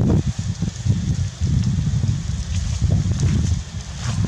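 Wind buffeting the camera microphone: a low, uneven rumble that swells and dips in gusts.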